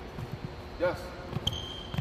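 A basketball being dribbled on a hardwood gym floor: a few low, irregularly spaced bounces as a child works the ball low and close to his body.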